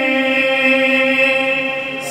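Unaccompanied male voice chanting a marsiya (Urdu elegy), holding one long steady note that fades a little near the end.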